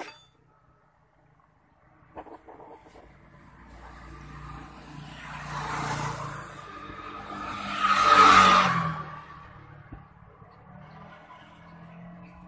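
A motor vehicle passing: its noise swells over a few seconds, peaks twice, loudest about eight seconds in, and fades out.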